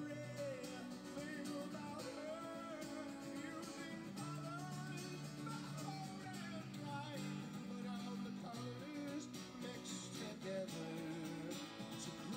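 A man singing live while playing an acoustic guitar: held, gliding vocal notes over steady strummed chords.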